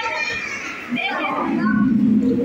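Voices: children and other people talking and calling out in a large hall.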